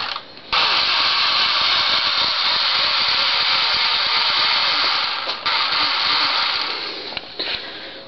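The twin small electric motors and propellers of a foam RC plane run at speed with a high whirr. They cut out briefly just after the start, then resume, dip once for a moment, and wind down over the last couple of seconds with a few short spurts of throttle.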